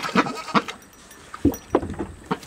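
A domestic goose drinking and dabbling in a plastic kiddie pool: short, irregular splashes and drips of water from its bill, with a brief animal call among them.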